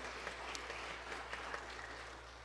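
Light applause from a small congregation, many pairs of hands clapping, easing off slightly toward the end.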